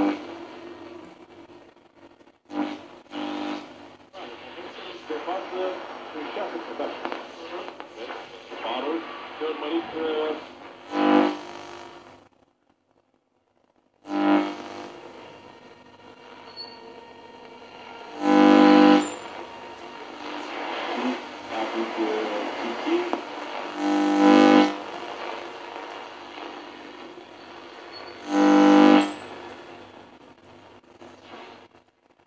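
A 1948–49 Ducati RR2050 valve radio being tuned across the medium-wave band. Broadcast voices and music come and go through its speaker, with hiss between stations and several loud stations briefly tuned in. It drops to near silence for about a second around the middle.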